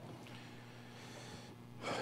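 A quiet pause with faint steady room hum, then a breath drawn in near the end just before speaking resumes.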